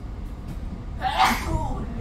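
A person sneezing once, about a second in, over a low steady rumble.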